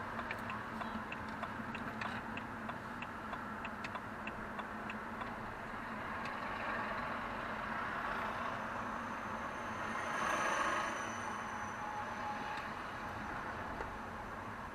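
A car's turn-signal indicator ticking regularly for the first five seconds or so, over steady engine and tyre noise heard inside the cabin. Around ten seconds in, a large vehicle passing close by swells up and fades away.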